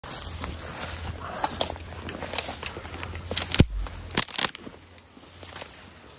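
Footsteps pushing through tall grass and dry brush, with stems rustling and twigs crackling. There is one sharp loud crack with a thump about three and a half seconds in, then a few more cracks.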